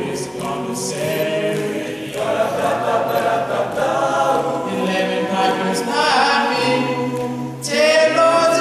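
A cappella vocal group of young male voices singing in harmony, with a low voice holding bass notes beneath.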